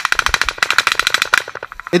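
Automatic gunfire: one long, rapid burst of evenly spaced shots, thinning out near the end.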